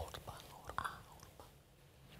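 Faint mouth sounds and breath from a presenter in the first second, fading into near silence.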